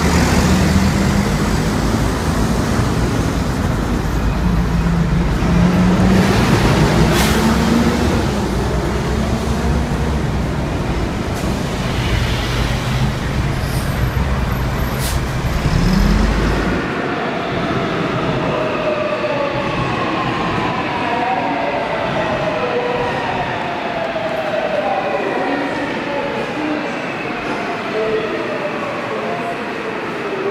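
Hyundai city buses in heavy street traffic, the engine of a bus close by running and revving as it pulls away. Then, after a sudden change, a subway train's whine falls slowly in pitch as it slows into a station with platform screen doors.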